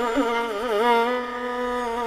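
Carnatic classical music: a melody line with quick wavering pitch ornaments (gamakas) that settles onto a long held note about a second in.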